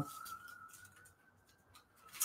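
Quiet room tone with a faint steady high whine, and a little soft, faint sound in the first half second.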